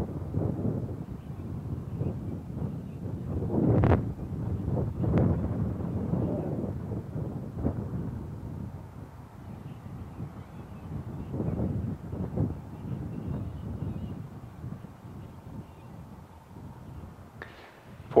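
Wind buffeting an outdoor microphone: a low, uneven rumble that swells and fades in gusts, the strongest about four seconds in.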